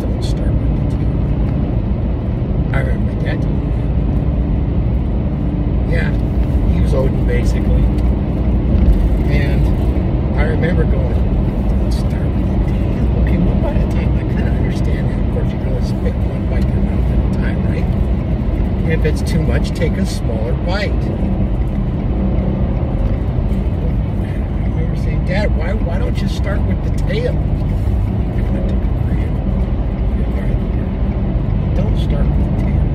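Steady low road and engine rumble inside a moving car's cabin, with a man's voice talking over it, partly buried in the noise.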